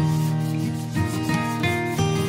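Sandpaper rubbed back and forth by hand on a wooden edge, under acoustic guitar background music.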